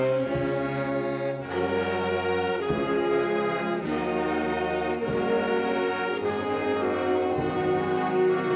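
Church wind band of saxophones, clarinets and brass playing a slow hymn in long held chords that change about once a second. A light cymbal stroke sounds every two and a half seconds or so.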